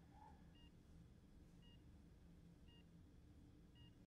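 Bedside hospital patient monitor beeping faintly, one short high beep about every second, over a low steady room hum.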